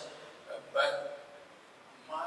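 A man's voice: one short hesitation sound or clipped word a little under a second in, during a pause in his speech.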